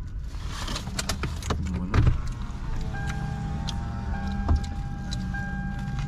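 Aluminium foil sandwich wrappers crinkling in a car cabin, sharp crackles in the first couple of seconds, over a steady low hum. A steady held tone sets in about halfway.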